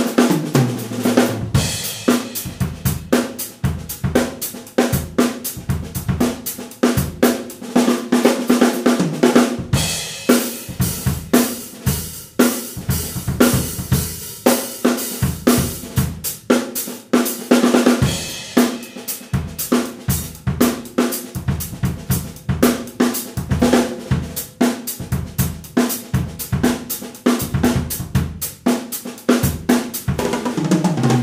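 Acoustic drum kit played without pause: a groove and fills on snare, toms, bass drum, hi-hat and cymbals in a dense, even stream of strokes. The accents are played with the up-down wrist motion.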